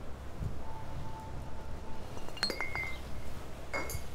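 A glass bottle clinks twice, sharply and with a brief ring, about halfway through and again near the end, over a low steady outdoor rumble.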